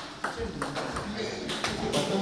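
Table tennis ball clicking off bats and the table as serves are struck and returned: several sharp clicks at uneven spacing.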